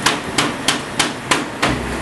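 Steel pestle pounding whole black peppercorns on a plastic cutting board to crack them: six sharp knocks in a steady rhythm, about three a second.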